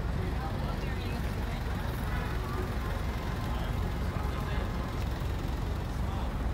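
Steady rumble of city traffic, with faint voices of people around.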